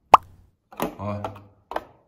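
A single sharp pop just after the start, followed by a man's short spoken 'ó' and a couple of faint clicks near the end.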